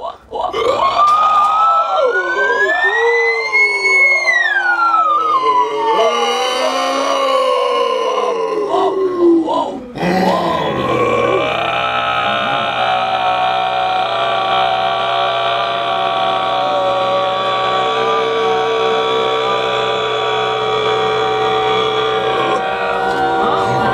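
Wordless unaccompanied group singing. For about the first ten seconds the voices slide in long glides up and down in pitch. After a brief break they settle into a steady held chord, several voices droning together.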